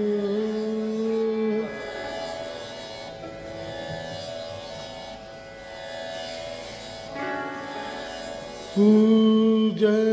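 Rajasthani folk song performed with sarangi: a loud long-held note that breaks off under two seconds in, a softer melodic passage, then a loud held note returning near the end.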